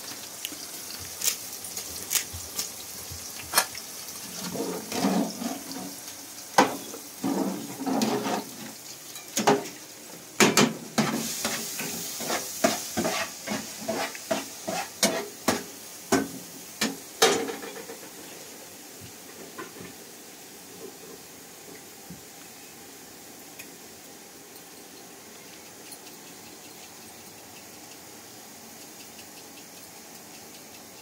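Metal utensil clinking, knocking and scraping against pots and a frying pan as food is stirred on a gas stove, over a faint sizzle of frying. The clatter is busiest for about the first eighteen seconds, then gives way to a faint steady hiss.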